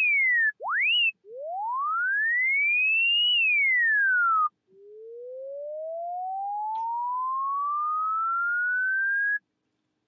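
Apple Logic Pro ES2 software synthesizer playing a plain sine wave bent by a pitch envelope, in four notes. A short fall comes first, then a quick rise, then a rise that peaks and falls away. Last is a slow rise lasting about five seconds. The envelope's attack has been turned up, so the bomb-whistle drop now sweeps upward.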